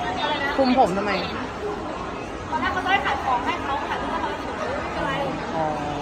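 People talking, with background chatter.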